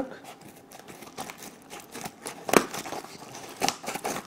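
Scissors snipping through a postal mailer bag, with the bag crinkling as it is handled: a string of short sharp snips and rustles, the loudest about two and a half seconds in.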